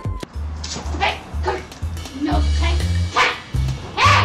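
Background music with a steady beat, with a dog barking several times over it.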